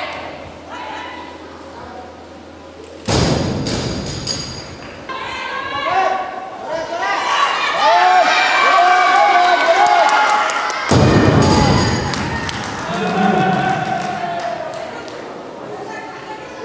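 A barbell dropped onto a weightlifting platform with a thud, and voices in a large hall shouting and cheering after the lift. The sound changes abruptly about three seconds in, where the voices start.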